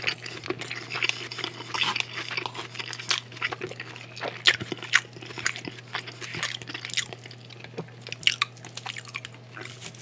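Close-miked chewing of a mouthful of broccoli, with wet mouth sounds and scattered sharp clicks over a steady low hum.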